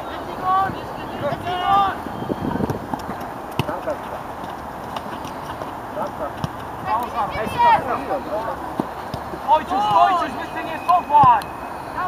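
Voices shouting short calls across an outdoor football pitch during play, the calls coming thicker in the second half, with a few sharp knocks in between.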